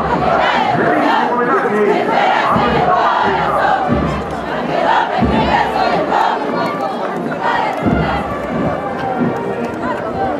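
Many voices shouting together, typical of soldiers' cries during a military drill display, over crowd noise, with a few low thumps.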